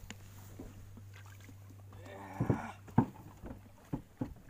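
A few sharp knocks against the small boat's hull, the loudest about three seconds in, over a steady low hum. Just before the knocks comes a brief rushing noise.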